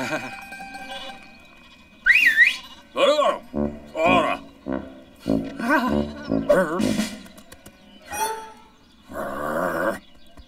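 Wordless cartoon character voices: a run of short mumbled and exclaimed bursts with swooping pitch, and one longer held vocal sound near the end, over light background music.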